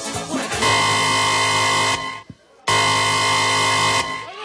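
A loud, steady, horn-like sound effect held in two long blasts, each about a second and a half, cut off abruptly with a short silence between them.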